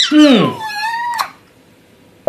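A short, high, wavering meow-like call lasting about half a second, just after a low falling 'mm'.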